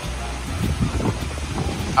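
Wind rumbling on the microphone over water sloshing and lapping as people wade through a pool, pushing an inflatable boat.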